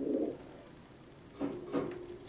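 Domestic pigeon cooing: a short, low coo at the start and another, longer coo about a second and a half in.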